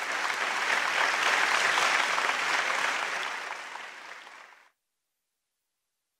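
Applause, rising at first and tapering off, then cutting off abruptly a little under five seconds in.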